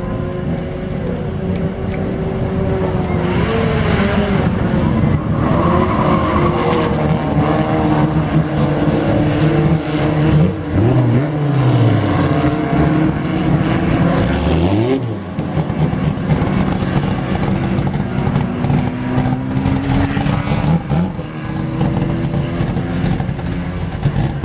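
Citroën 3CV race cars' air-cooled flat-twin engines running hard as a pack goes by. Several engine notes overlap, rising and falling in pitch, with sharp pitch drops as cars pass close between about ten and fifteen seconds in.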